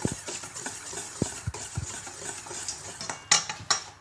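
A kitchen utensil stirring seasoned flour in a metal bowl, scraping through the flour and clinking against the bowl's sides, with a few sharper knocks near the end.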